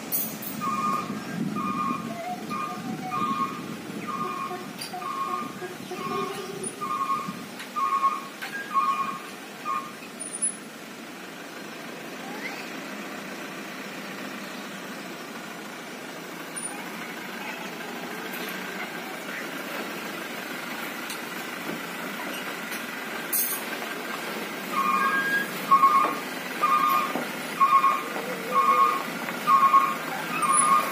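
A light dump truck's diesel engine runs slowly and gets gradually closer. Its electronic warning alarm beeps in a quick repeating pattern for the first ten seconds or so, then again for the last few seconds.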